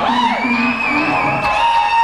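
Live rock band playing, with a long high note held and wavering through most of the stretch over the bass and drums, and the crowd cheering.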